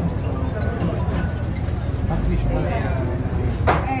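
Busy kitchen background: a steady low rumble with faint voices, and one sharp clink a little before the end.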